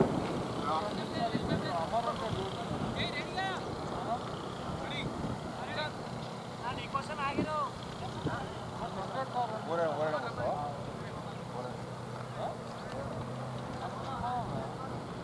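Indistinct voices of players calling and chatting across an open cricket field, heard faintly at a distance, over a steady low hum.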